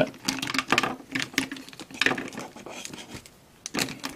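Hard plastic action figures and a plastic toy vehicle clicking and knocking against each other as they are handled and fitted into place, in irregular small clicks.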